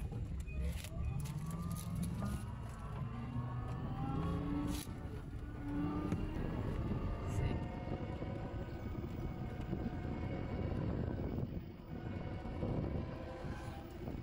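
Grand Zhidou A520 electric mini car heard from inside the cabin as it pulls away: the electric drive's whine rises in pitch as it speeds up over the first few seconds, then holds steady over tyre and road rumble.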